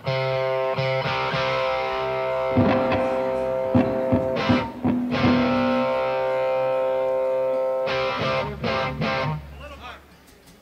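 Amplified electric guitars on stage ringing out long sustained chords, with a few scattered strums and short breaks, dying away near the end.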